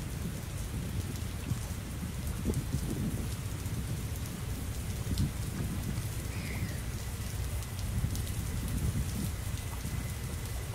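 Wind rumbling on the microphone with small waves lapping and splashing against a stone quay wall, steady throughout. A faint bird call is heard about six and a half seconds in.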